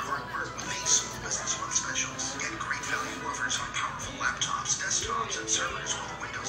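A television commercial playing in the room: an announcer's voice-over over background music.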